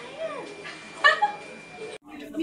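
A person's voice: a short rising-and-falling exclamation, then a loud, short high-pitched squeal about a second in.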